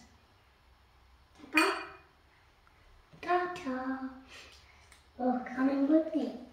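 Three short vocal sounds without clear words, with light clinks of a small metal measuring cup against the mixing bowls.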